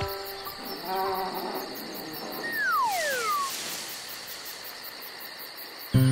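Cartoon night ambience of crickets chirping steadily, with a brief tone about a second in and a falling whistle-like glide about halfway through.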